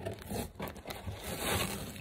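A cardboard shipping box being worked open by hand: scraping and tearing at the tape and cardboard, a little louder in the second half.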